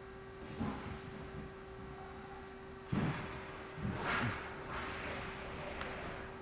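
Palletizer machinery running with a steady hum, broken by a sharp clunk about three seconds in and further knocks and scraping soon after, as a layer of cases is swept across the layer head.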